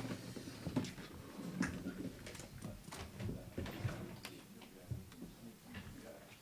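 Auditorium room noise as people move about: scattered, irregular clicks and knocks under a faint murmur of voices.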